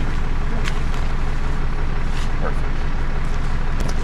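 Tow truck's engine idling steadily, a low even hum, with a few light clicks over it.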